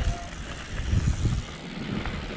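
Wind buffeting the microphone of a rider-mounted camera while mountain bike tyres roll over hard-packed dirt, with uneven low rumbles.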